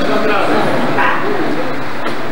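Speech only: a man speaking into a microphone, his voice gliding up and down in pitch.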